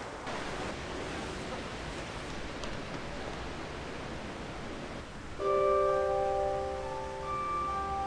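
A steady low hiss of room tone. About five and a half seconds in, soft background music of several long held notes comes in and carries on.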